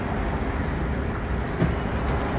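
Steady city street traffic noise: a continuous low rumble of cars on the road.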